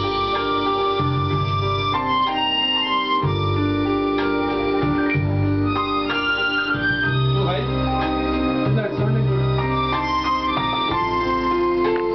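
Accordion being played: a melody of held reed notes over sustained bass notes that change every second or two.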